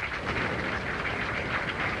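Steady outdoor background noise from an on-course microphone: an even wash of sound with no distinct strikes or voices standing out.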